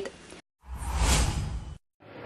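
A single rushing whoosh of noise, about a second long, that swells and fades and is strongest in the low rumble. It is framed by abrupt cuts to dead silence on either side.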